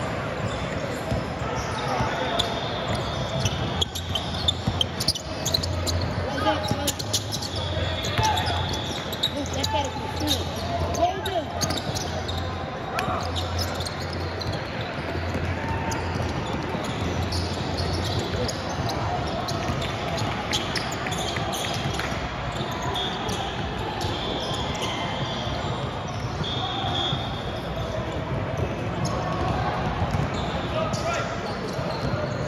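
Indoor basketball game sounds in a large, echoing gym: the ball bouncing on the court, with sharp bounces and impacts thickest in the first half, and short high sneaker squeaks. Indistinct players' and spectators' voices run underneath.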